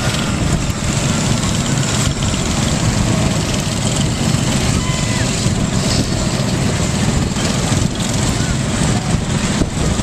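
Small petrol go-kart engines running as karts drive around the track, a steady, dense mechanical noise.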